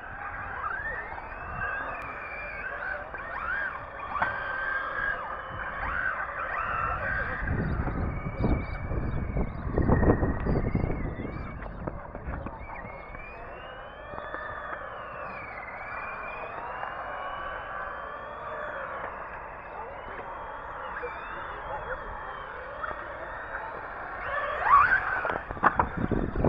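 Radio-controlled cars' motors whining, the pitch gliding up and down over and over as they speed up and slow down. A low rumble of wind on the microphone comes in a few seconds in the middle.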